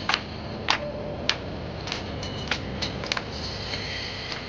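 Hand claps, sharp and fairly even, about one every half second over a steady background din.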